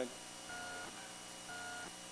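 Two faint electronic beeps about a second apart, each a short steady tone lasting about a third of a second, over the hush of a large hall.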